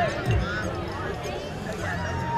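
A crowd of young people shouting and chattering excitedly over a thumping music beat of about two beats a second, which stops about half a second in.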